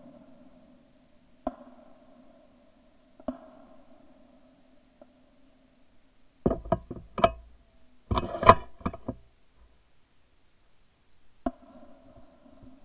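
Sharp knocks and clicks from handling a shotgun, picked up by a camera on its barrel. Single clicks come now and then over a faint steady hum. Two louder clusters of knocks come about halfway through.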